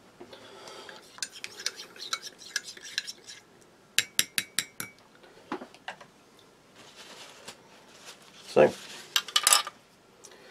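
A plastic spoon scraping and clinking in a tea mug as a tea bag is lifted out of the tea, with a quick run of about six sharp taps about four seconds in and a few more clicks near the end.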